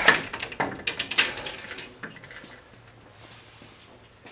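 Fishing rods clacking against a glass display counter as they are handled: a few sharp knocks in the first second or so, dying away by about two seconds in.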